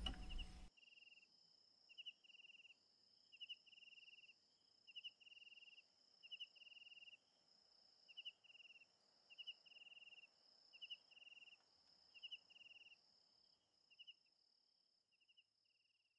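Faint crickets chirping in a regular pattern, a short chirp followed by a longer trill about every one and a half seconds, over a steady high-pitched tone; the chirping stops a couple of seconds before the end. At the very start the last acoustic guitar chord dies away.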